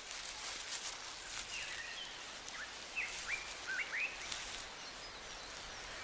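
A quiet outdoor ambience with a faint hiss. Through the middle come several short, high bird chirps, each a quick sweep in pitch.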